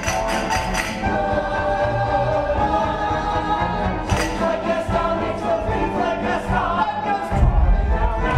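Theatre orchestra and chorus of a stage musical in a live performance. A rhythmic percussion beat of about four strikes a second stops about a second in and gives way to held choral notes over the orchestra, and the bass swells near the end.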